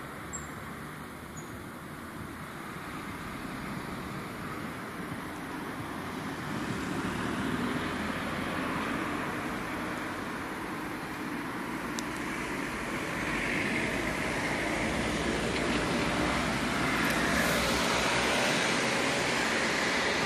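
Steady road traffic: a continuous hum of passing cars that slowly grows louder.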